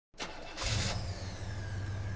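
A car engine starting, with a short loud burst about half a second in, then running steadily with a low rumble.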